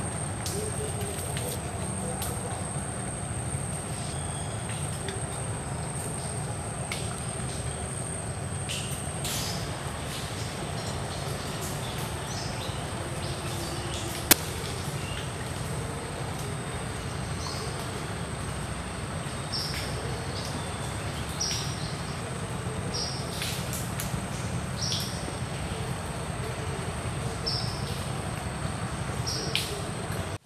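Mangrove forest ambience: a steady high-pitched insect drone, with short bird chirps every second or two in the second half, over a low rumble. A single sharp click about halfway through is the loudest moment.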